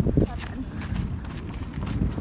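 Footsteps in soft, dry sand: an uneven series of soft crunches over a low rumble, with a brief voice sound at the very start.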